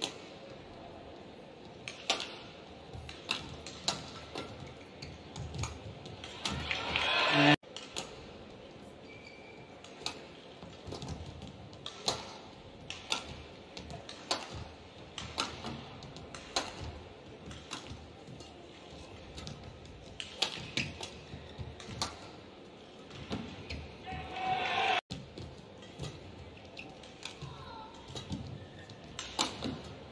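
Badminton rally: rackets striking the shuttlecock in irregular sharp cracks over low arena background. Twice, about a quarter of the way in and near the end, a swell of crowd noise builds and cuts off abruptly.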